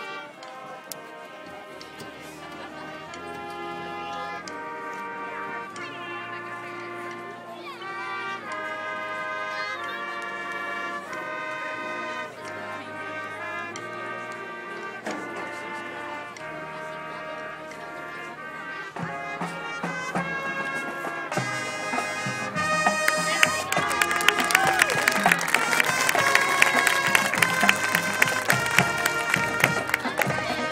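Marching band playing slow, sustained brass chords that change about once a second. Percussion comes in about two-thirds of the way through, and the full band grows much louder toward the end.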